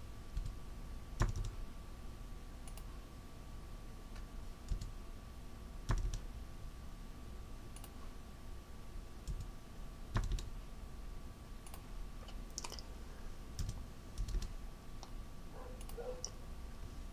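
Scattered clicks of a computer mouse and keyboard, three louder ones about a second, six seconds and ten seconds in with softer ones between, over a faint steady electrical hum.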